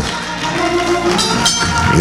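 Church band music in a pause between spoken words: held chords with a tambourine jingling.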